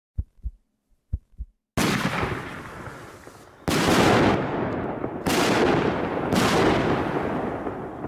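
Aerial firework shells bursting: four loud bangs over about five seconds, each trailing off in a long fading tail. A few faint thumps come before the first bang.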